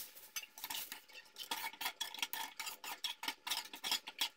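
Metal spoon stirring watery semolina (upma) in a metal pan, clinking and scraping against the pan in quick, irregular taps.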